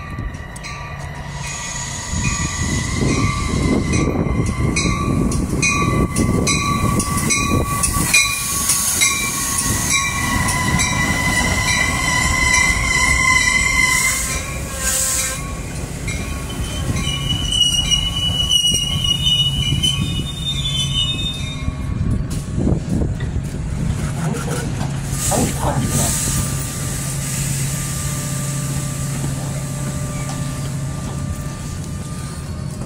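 Metra commuter train pulling into the platform: the rumble and high squeal of steel wheels and brakes as the stainless-steel bi-level cars roll past. It is followed by a steady low hum as the train stands.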